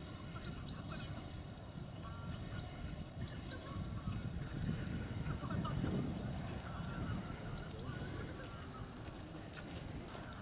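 Ducks calling with scattered short quacks over a steady low background rumble, with a few brief high chirps from a small bird.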